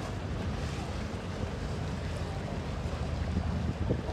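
Busy canal waterfront ambience: a steady low rumble of motorboat engines and wind buffeting the microphone, with choppy water lapping against the quay. One short knock near the end.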